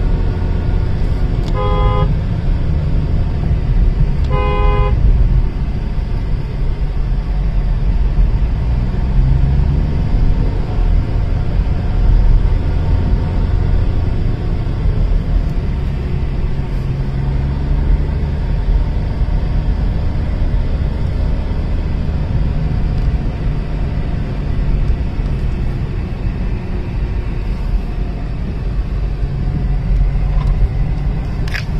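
Car driving, heard from inside the cabin: a steady low engine and road rumble, with two short car-horn toots about two and five seconds in.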